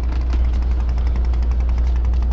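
A wooden river boat's diesel engine running steadily under way, a loud low drone with an even, rapid knocking beat.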